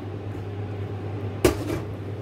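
A single sharp knock about one and a half seconds in, with a brief ring after it: a ceramic dish striking a stainless steel mixing bowl as powdered milk is tipped in. A steady low hum runs underneath.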